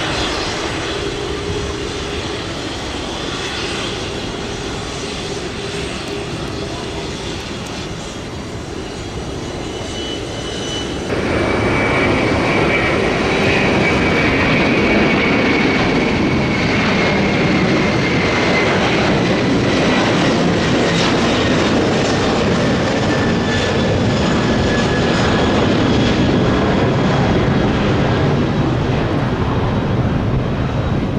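A nearby airliner's jet engines running steadily at low power. About eleven seconds in this gives way to a louder, steady rush: a China Airlines Airbus A330's twin jet engines at takeoff thrust as it lifts off and climbs away, with a whine that slowly falls in pitch.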